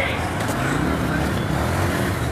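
Outdoor street noise: a steady low rumble, with people's voices in the background.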